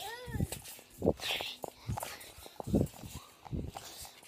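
A child's brief high voice at the start, then irregular dull thumps and handling knocks as children bounce on a garden trampoline.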